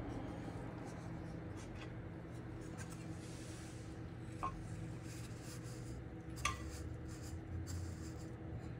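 A steady low machine hum, with light rubbing and two short clicks, about four and six and a half seconds in, as a metal miner case panel is handled.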